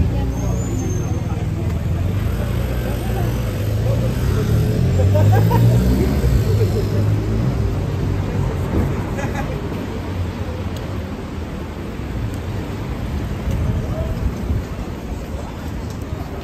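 City street traffic at a busy junction: car and truck engines running, with a low rumble that swells to its loudest about five to six seconds in as a vehicle speeds up close by, then eases off. People's voices mingle with it.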